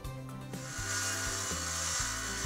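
Background music with steady bass notes. From about half a second in, a faint, even hiss of a power saw cutting through an engineered wood plank.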